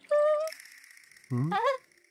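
Two short wordless voice sounds from cartoon characters: a brief steady high note, then about a second later a quick sharply rising 'hm?'.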